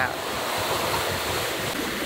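Steady rush of wind and of water running along the hull of a sailboat under sail at about seven knots.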